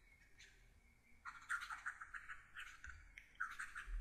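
Faint scratching of a stylus writing by hand on a tablet, in quick short strokes from about a second in, as a word is written out.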